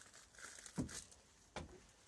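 Faint rustling and two soft knocks from people moving about.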